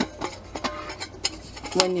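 Light metallic clicks and taps of a titanium camping pot, its lid and wire handle, knocking together as the pot is handled and turned, about half a dozen scattered clicks.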